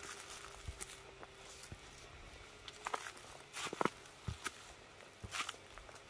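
Footsteps crunching through dry fallen leaves: irregular crackling steps, the loudest a little past halfway.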